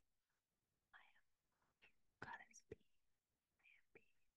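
Very faint whispering and lip sounds in a few short spurts: a woman mouthing a mantra with her lips, almost silently, close to the microphone.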